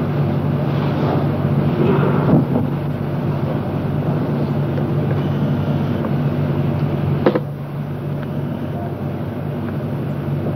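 Steady low hum with hiss, with one sharp click about seven seconds in, after which it runs a little quieter.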